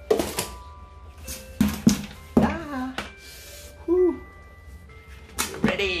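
A few sharp knocks and clatter from a large plastic bucket of fresh potting soil being handled and moved, over background music with steady held notes.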